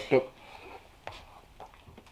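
A short vocal exclamation from a man at the very start, then a quiet room with a few faint small clicks.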